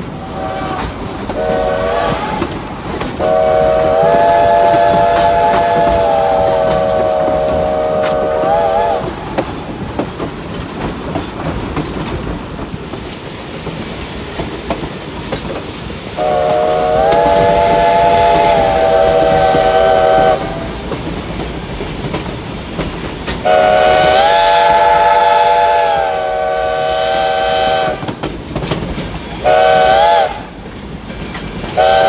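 Steam whistle of No. 93, a 2-8-0 Consolidation steam locomotive, blowing a chord of several notes in a series of blasts, heard from the rear of the train: two brief toots, then three long blasts of four to six seconds each, and a short one at the end. Between blasts come the steady rumble and clickety-clack of the passenger cars rolling on the rails.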